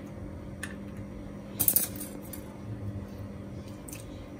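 Light clicks and knocks of thin wooden skewers against a bowl and countertop while cubes of marinated monkfish are threaded onto them, the loudest little cluster about halfway in and a single click near the end.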